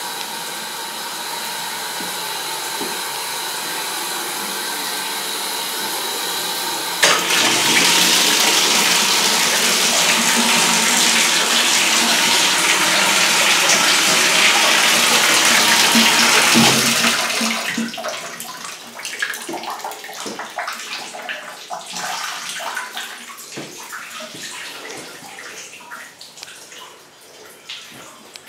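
Water running hard from a fixture in a tiled bathroom. It starts abruptly after a steady hiss, runs for about ten seconds, then drops away to quieter, irregular trickling and dripping.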